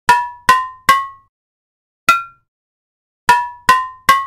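Cowbell pattern from a trap instrumental playing almost alone: three quick pitched hits, a single higher hit, then two more of the lower hits, each ringing briefly with silence between.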